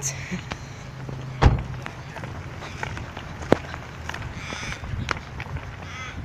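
Knocks and rustles of a phone being handled and carried, with footsteps, and one heavier thump about a second and a half in. A low steady hum stops at the thump.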